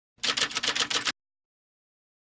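Typewriter-style typing sound effect: a quick run of about ten clacking keystrokes lasting about a second, as a caption is typed onto the screen.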